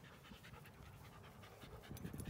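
Faint panting of a dog close by, with quick soft breaths over a low background hush.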